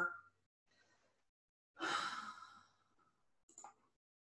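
A woman's breathy sigh about two seconds in, fading out after under a second, then a faint mouse click near the end.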